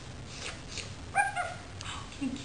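A short high-pitched vocal call a little past halfway, lasting about a third of a second, with a few faint clicks around it.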